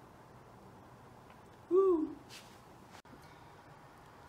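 A man's short hummed "hmm" about two seconds in, its pitch rising then falling, followed by a brief breathy exhale; otherwise quiet kitchen room tone.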